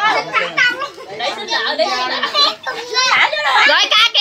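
A group of children chattering and calling out over one another, with high voices overlapping throughout.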